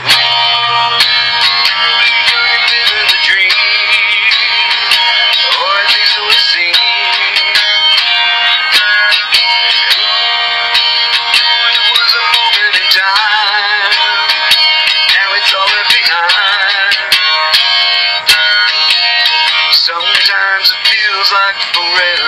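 Instrumental break in a song: strummed guitar under a wavering lead melody line, played back through the small speaker of an Olympus digital voice recorder, with nothing above the treble.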